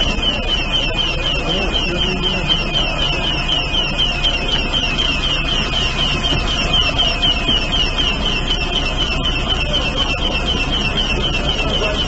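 An electronic alarm sounding a high, chirping tone over and over, about four times a second without a break, over a steady low engine rumble and faint voices.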